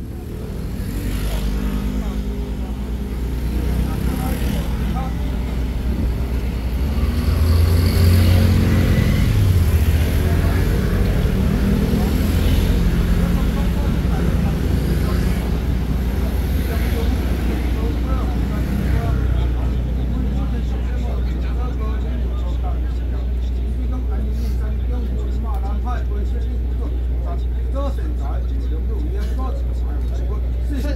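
Men of a Taiwanese xiaofa ritual troupe chanting with their hand drums silent, over a steady low hum.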